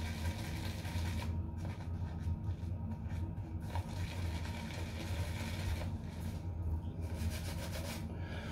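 Boar-bristle shaving brush swirled and rubbed over a tub of Tabac shaving soap to load and build lather: a faint, steady scrubbing with a light rhythm. The brush has been squeezed a little too dry, so the lather is still thin.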